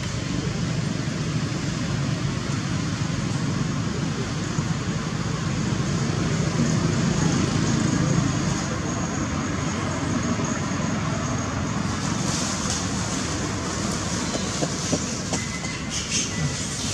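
Steady rushing outdoor background noise with no distinct events. A faint thin high tone runs through the middle, and the hiss grows brighter near the end.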